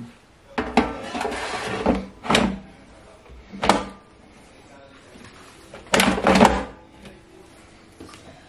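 The basket drawer of a Xiaomi Mi Smart Air Fryer being handled and slid into the fryer's plastic body: a few separate knocks and scrapes, then the loudest pair of clacks about six seconds in as the drawer is pushed shut.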